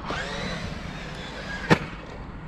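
A radio-controlled car's electric motor whining faintly and falling in pitch over the first second, over a steady outdoor hiss, with one sharp click near the end.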